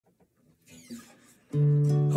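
Acoustic guitar: after a faint rustle, a chord is strummed about one and a half seconds in and rings on.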